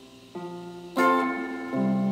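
Clean electric guitar picking a single note, then ringing a full chord about a second in, followed by another low root note near the end: the root-note-then-chord verse pattern, here on a C major chord.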